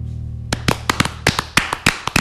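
The last held chord of a guitar-backed song fades out, and about half a second in a few people start clapping: sharp, separate claps, several a second.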